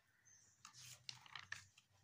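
Faint rustle and crinkle of a glossy paper catalogue page being turned by hand, with a few small clicks of the paper.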